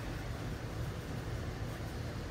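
Steady background room noise: a low hum with a soft hiss, with no distinct event.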